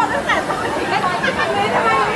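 Several people chattering at once, their voices overlapping into indistinct talk.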